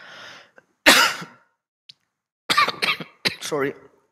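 A man's single sharp cough about a second in, after a short intake of breath.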